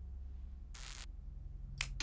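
A cigarette being lit: a short scratchy hiss about a second in, then a sharp click near the end, over a steady low hum.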